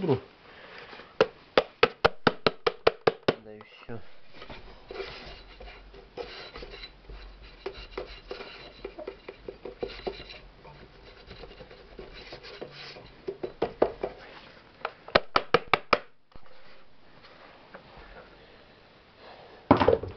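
Utensils handled while making bee candy: quick runs of sharp clicks, about five a second, near the start and again about three-quarters through, with softer tapping and scraping in between. These come from a metal spoon and an enamel pot as powdered sugar is tipped from a plastic tub into the thick honey-and-sugar mix.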